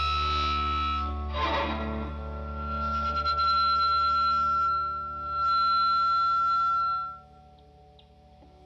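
Live rock band playing an instrumental passage: sustained electric guitar notes over bass, with one long held high note. The band stops sharply about seven seconds in, leaving only a faint lingering tone.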